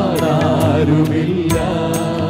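A group of men singing a Malayalam Christian devotional song together into microphones, backed by a live band with a steady drum beat.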